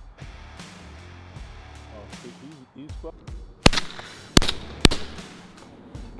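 Three quick shotgun shots from a Beretta A400 semi-automatic, fired at a fast-flying dove: the first, then two more about half a second apart, each loud and sharp with a short ring after it. The dove is missed.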